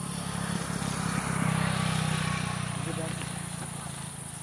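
A motor vehicle passing by on the road, growing louder to a peak in the middle and then fading away.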